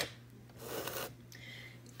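Faint rubbing and rustling handling noise in two soft passes, the first about half a second in, just after a sharp click at the very start.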